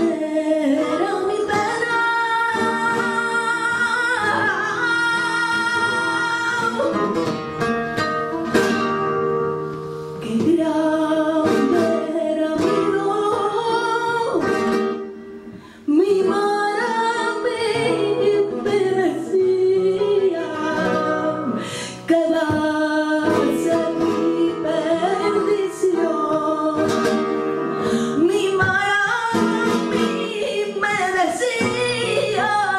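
A woman singing flamenco cante in long, ornamented, wavering lines, accompanied by a flamenco guitar, with a brief lull about halfway through.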